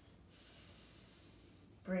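A person breathing audibly: one soft, drawn-out breath heard as a faint hiss, lasting about a second and a half.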